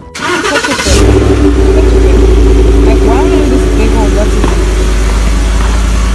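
A car engine starts about a second in and keeps running with a loud, steady low rumble, after a short burst of rustling noise.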